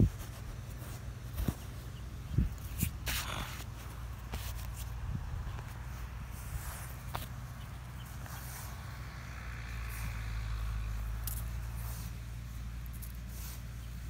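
Hands digging and scraping through loose, damp soil, with scattered short scrapes and clicks of crumbling dirt over a steady low rumble.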